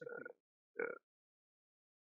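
A man's voice making two short vocal sounds in the first second, like hesitating syllables between phrases, then complete silence.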